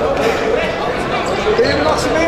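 Futsal ball being kicked and struck on a sports-hall floor, several sharp knocks, mixed with players' shouted calls, all echoing in the large hall.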